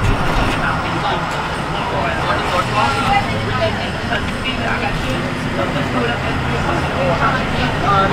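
A 2010 IC CE-series school bus driving, heard from inside: its diesel engine running steadily with road noise, and passengers chattering in the background.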